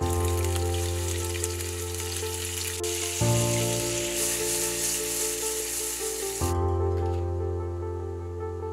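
Raw shrimp sizzling in hot oil in a nonstick frying pan, a dense steady hiss that cuts off suddenly about six and a half seconds in. Soft background music plays under it throughout.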